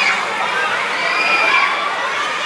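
A group of children shouting and calling out at once, many voices overlapping in a loud, steady din.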